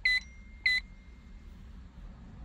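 Two short, high electronic beeps about two-thirds of a second apart, part of an evenly spaced series, with a faint thin tone trailing on for about a second after the second beep.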